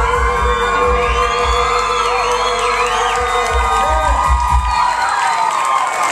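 A live band with accordion, guitars and drums holds its closing chord while the drums strike a run of final hits. A crowd cheers, whistles and whoops over it, and the cheering goes on after the music stops near the end.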